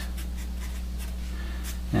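Sharpie felt-tip marker writing on paper in short, faint scratchy strokes, over a steady low hum.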